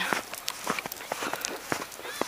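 Footsteps in fresh snow as a person walks: many short, irregular crunches.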